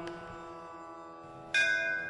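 Devotional music accompaniment: a sustained drone holds quietly after the chant, with a light click at the start. About one and a half seconds in, a bell is struck once and rings with clear, steady tones.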